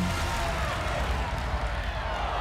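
Low rumble of the game show's dice-rolling machine tumbling two dice, under murmuring studio audience noise.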